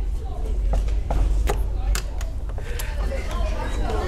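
Knocking on a wooden classroom door: several sharp knocks spread over about two seconds, with faint voices and a low rumble underneath.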